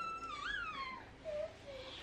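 Toddler whining: one long, high-pitched wail that rises, wavers and trails down about halfway through, followed by two short, softer whimpers.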